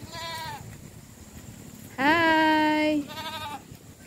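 A goat bleating three times. The first call is short and falls in pitch, the second, about two seconds in, is the loudest and lasts about a second, and the third is short and wavering.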